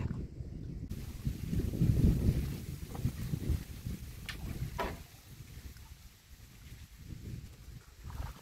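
Low, uneven wind rumble on the microphone that fades after about five seconds, with two faint clicks a little after the middle.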